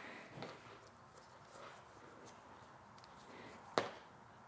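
Faint handling sounds of a leather strap being woven through a metal alligator snap, with a few soft ticks and one sharp click near the end.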